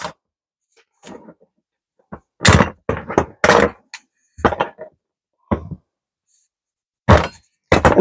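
Heavy-duty cable cutter biting through number 6 copper jumper-cable wire: a series of short sharp snaps and thunks starting about two seconds in, with the cut-off clamps knocking on a wooden workbench.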